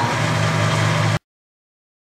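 Clausing horizontal milling machine running with its arbor-mounted gear cutter at about 150 rpm, a steady hum. The sound cuts off abruptly a little over a second in.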